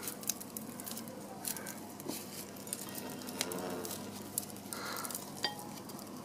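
A dried dahlia seed head being pulled apart by hand, its dry, papery bracts crackling and rustling in a run of small, irregular clicks.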